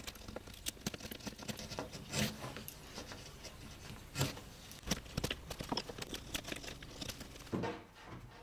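Carving gouge paring maple by hand: faint, irregular small scrapes and clicks as chips come away from the wire slot. A louder short noise comes near the end.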